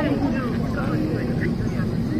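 Steady low hum inside an airliner's cabin on the ground, with passengers' voices chattering over it.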